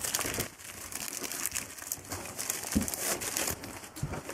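Plastic seal wrapper being pulled off a magazine, crinkling and rustling throughout.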